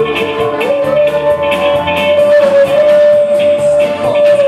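A live band playing, with electric guitar, drum kit and upright bass, over one long held high note that steps up in pitch a little under a second in.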